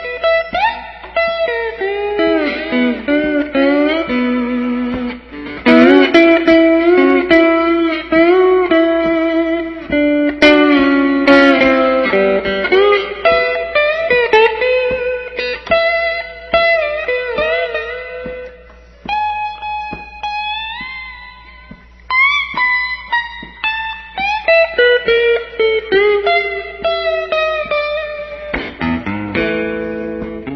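Electric guitar playing an instrumental blues break between verses, single-note lines with bent notes. It drops quieter for a few seconds around the middle, on a long held note that bends up, then picks up again.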